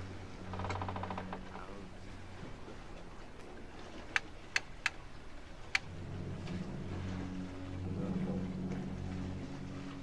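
Big-game fishing reel's ratchet clicking as line slowly pays out: a short fast ratcheting buzz near the start, then four separate sharp ticks between about four and six seconds in, over a low steady hum.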